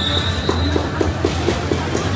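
A street violin duet over a backing track from a portable amplifier comes to an end: the last held note fades out within the first second. What remains is a steady crowd-and-street din with a few soft knocks.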